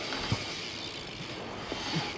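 Steady outdoor background noise, with a faint knock about a third of a second in and another near the end.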